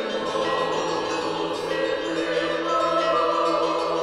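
Music with a choir singing long, held chords.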